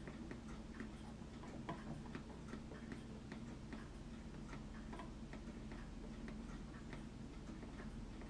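Faint light ticking clicks, about two or three a second and not quite regular, over a low steady hum.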